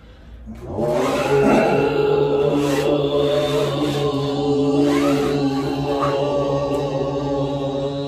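Overtone chanting: a low sustained voiced drone with bright overtones ringing above it. It breaks off for a breath at the start and comes back in about a second in, then holds steady.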